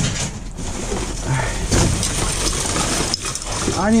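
Rummaging through a dumpster full of trash: plastic bags and cardboard rustling and scrap shifting, with a few knocks, over a low steady hum.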